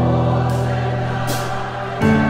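Gospel worship music: an electronic keyboard holds a sustained chord over a deep bass note, fading slowly.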